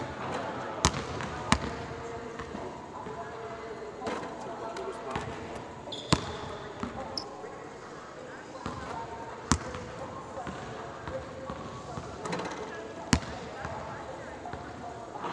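Basketball bouncing on a hardwood court in a large empty arena: about five sharp, spaced-out thuds that echo in the hall.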